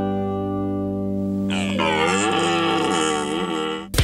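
Soft plucked-string background music. About a second and a half in, a long, rough, wavering call joins it: a red deer stag roaring in the autumn rut. Both cut off suddenly near the end as louder music starts.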